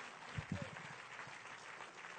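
Audience applauding faintly, an even patter with a brief murmur of voices about half a second in.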